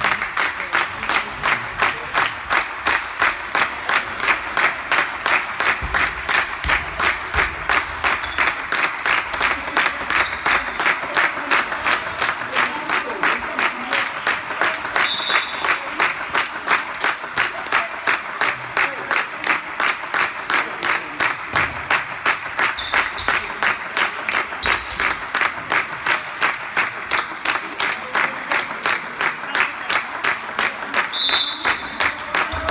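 Spectators clapping together in a steady rhythm, about three claps a second, echoing in a sports hall.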